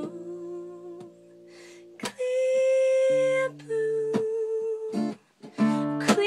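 Acoustic guitar strumming sustained chords under a singer humming long held notes. It dips quieter for about a second before a strum brings in the next note.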